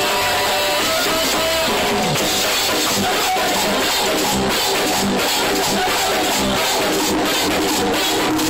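A live bachata band playing loudly: guitar, drums and the scrape of a güira keeping a steady rhythm.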